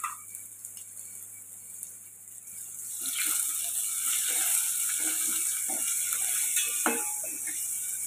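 Garlic cloves frying in hot oil in a stainless steel pot, sizzling louder from about three seconds in as they brown, with a metal spoon scraping and knocking against the pot while they are stirred.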